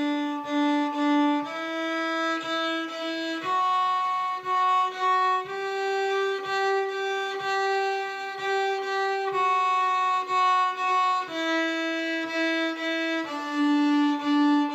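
Solo fiddle bowing a slow scale exercise on the D string: open D, then first, second and third fingers (D, E, F-sharp, G) and back down again, each note bowed in a hoedown rhythm of long, short, short.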